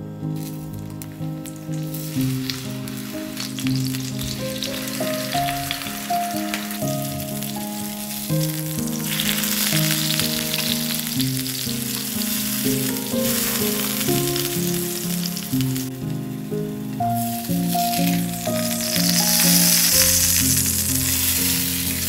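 Food sizzling as it fries in hot oil in a pan, growing louder in a few stretches, over background music with a gentle melody.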